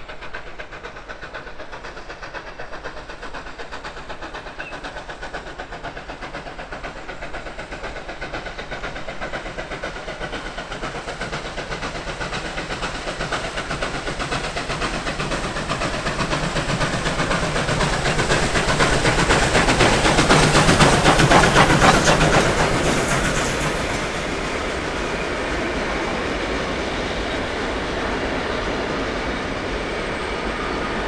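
Victorian Railways K-class 2-8-0 steam locomotive working hard as it approaches and passes, its exhaust beats growing steadily louder to a peak about 20 seconds in. The sound drops suddenly a few seconds later, leaving the steady rolling and clatter of the passing carriages.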